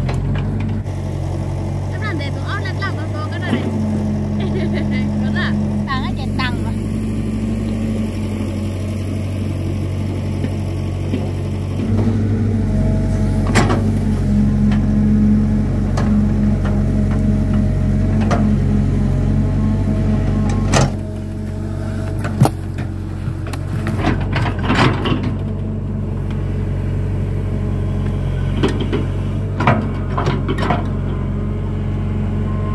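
Komatsu mini excavator's diesel engine running steadily, louder for a stretch in the middle as the machine works the soil. Occasional clanks and knocks from the bucket and machine.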